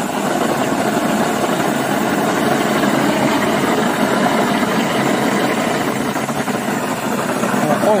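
Foam generator for foam concrete running, pushing a steady stream of foam out of its lance into a metal tub: a loud, steady rushing noise with a machine-like drone under it.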